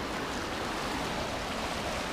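The McKenzie River's current rushing steadily over a shallow, rocky riffle.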